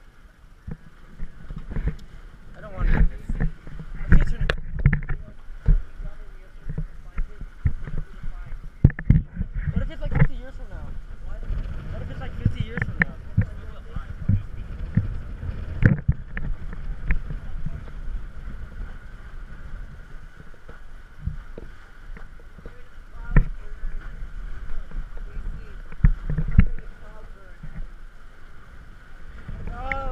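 Water slapping and splashing against a sailing catamaran's hull as it moves through choppy sea, with wind rumbling on the microphone. Irregular sharp knocks and splashes come throughout, the loudest in the first ten seconds.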